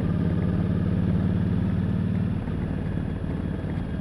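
Motorcycle engine running at road speed with wind noise, picked up by a camera on the chin of a full-face helmet. The engine note softens slightly about two and a half seconds in.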